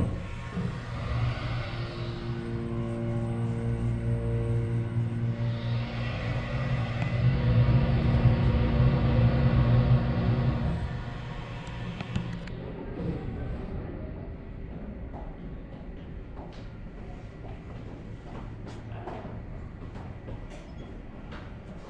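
Electric hoist machinery of an incline railway running: a steady motor hum over a low rumble with several held tones. It grows louder through the first half, then drops sharply about ten seconds in to a quieter hum.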